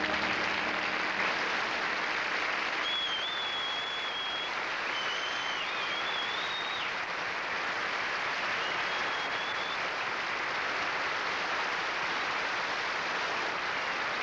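Studio audience applauding at the end of a ballad, steady clapping with a few high whistles in the first half.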